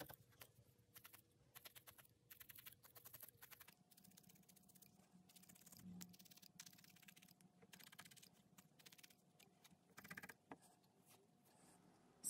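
Faint, rapid ticking of a felting needle stabbing repeatedly into core wool in quick bursts, firming and shortening the wool nose of a needle-felted dog.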